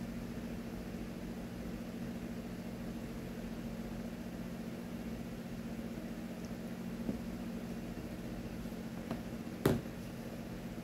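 Steady low room hum with faint sounds of a person eating rice noodles with chopsticks, a few soft ticks and mouth noises, and one sharp click near the end.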